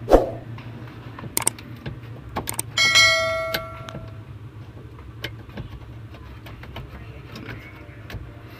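Clicks and knocks of a hand working at a car's under-dash fuse box, the loudest a sharp knock right at the start, then a brief metallic ringing about three seconds in that fades within a second, over a low steady hum.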